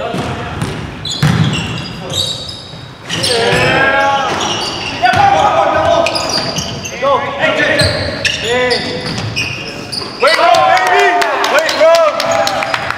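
Basketball game on a hardwood gym floor: the ball bouncing as it is dribbled, sneakers squeaking in short rising and falling chirps, and players' voices calling out, all echoing in the hall. The squeaks come in clusters a few seconds in, again in the middle and most thickly near the end.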